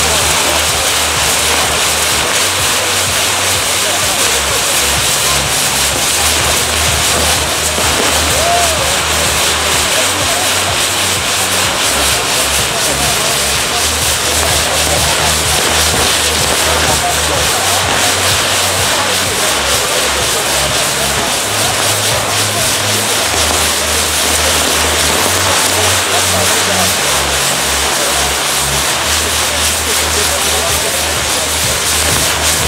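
Maltese ground fireworks, spinning wheel set-pieces, burning with a loud, continuous hiss and crackle over a low, uneven rumble.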